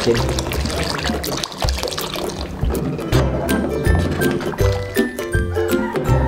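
Milk pouring from a carton into a large aluminium pot of liquid, for roughly the first half, with background music with a steady bass beat coming to the fore in the second half.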